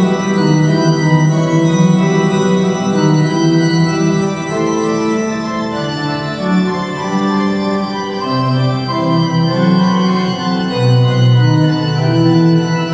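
Organ music: slow, sustained chords with long held notes that change every second or two, and deeper bass notes coming in during the second half.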